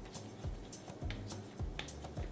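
Background music with a steady beat, about two low thumps a second under held bass notes and light high ticks.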